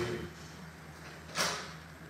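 A single short knock about one and a half seconds in, over a low steady hum.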